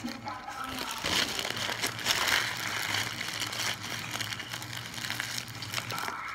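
Paper burger wrapper crinkling and fries being rummaged in a plastic tub close to the microphone: a dense crackling rustle from about a second in, after a brief murmur of voice at the start.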